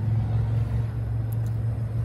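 A steady low hum with a low rumble beneath it, unchanging throughout.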